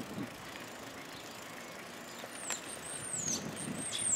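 Quiet outdoor street ambience, with a series of high, thin chirps sliding down in pitch starting a little past halfway.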